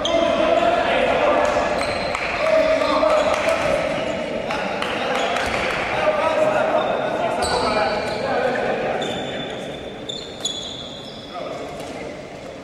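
A handball bouncing on a wooden sports-hall floor as players dribble and pass, with voices calling out, all echoing in a large hall. The voices fade somewhat over the last few seconds.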